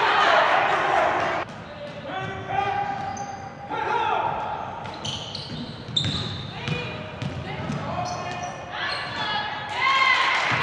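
Live gym sound of a basketball game: a ball dribbling on the hardwood floor, short high squeaks, and players calling out on the court, with voices loudest in the first second and a half.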